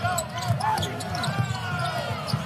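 Basketball game sounds on a hardwood court: sneakers squeaking in short, gliding chirps as players jostle in the lane, over steady arena crowd noise.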